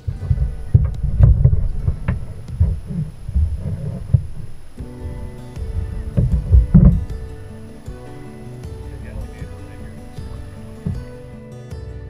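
Low, uneven rumbling and knocks on a camera microphone aboard a kayak on the water for the first half or so. From about five seconds in, background music with sustained notes comes in and carries on to the end.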